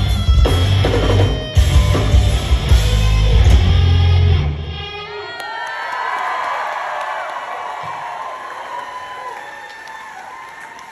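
Hard rock band playing live, electric guitar and drums loud with a heavy low end, stopping sharply about halfway through. The crowd then cheers and whoops, the cheering slowly dying down.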